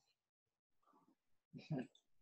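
Near silence, broken by a man's voice saying one short word, faintly about a second in and more clearly near the end.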